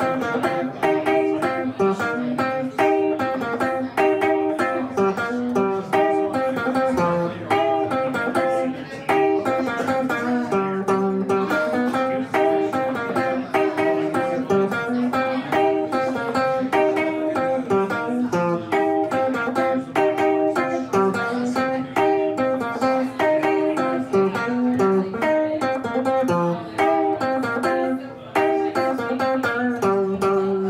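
Solo semi-hollow electric guitar playing a blues instrumental, a repeating low riff with single-note lines over it.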